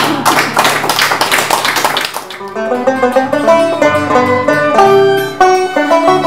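Live acoustic music on a plucked string instrument: an instrumental starts with fast, busy strumming for about two seconds, then moves to a picked melody of clear, separate notes.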